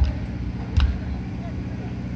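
Steady low hum from the stage sound system between songs, with two dull thumps a little under a second apart.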